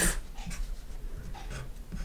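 Faint felt-tip marker strokes on a white writing surface, a few short scratches as figures and a plus sign are written.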